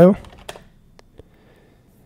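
A few faint computer keyboard keystrokes, about three separate clicks, typing the save-and-exit command in the vi text editor.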